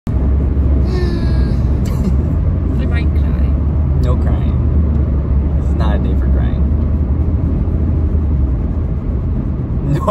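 Steady low rumble inside a car's cabin, with a few short, quiet vocal sounds over it; the rumble drops away near the end.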